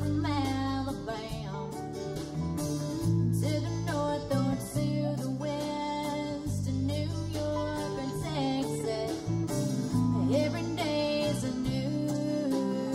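Country band playing live: strummed acoustic guitar with electric lead guitar, electric bass and drums.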